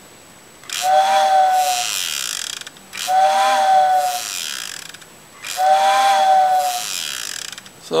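Vintage TYCO HO model-railroad steam-whistle unit, its fan now driven by a CD-player can motor, blowing three breathy whistle blasts of about two seconds each. Each blast starts with a quick rise and fall in pitch, then settles to a steady hoot. Something inside the unit is hitting as it runs, which the builder counts as the remaining flaw of the repair.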